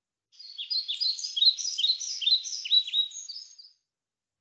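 Recorded birdsong opening a textbook listening track: a quick series of short, high, downward-sliding chirps, about three or four a second, lasting about three seconds.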